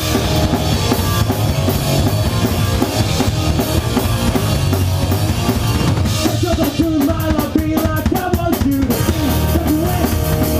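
A rock band playing live and loud: drum kit, electric bass and electric guitar. Between about six and nine seconds in, the sound thins to steady drum hits under a guitar line before the full band comes back.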